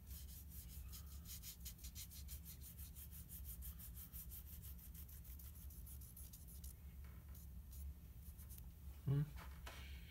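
An ink-loaded cotton swab scrubbed back and forth across paper card stock, spreading a fountain-pen ink swatch: faint, quick scratchy strokes about four a second that thin out about seven seconds in.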